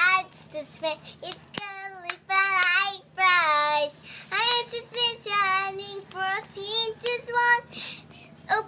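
A young girl singing unaccompanied in a high voice, in short held phrases with a wavering vibrato, with a few sharp clicks in between.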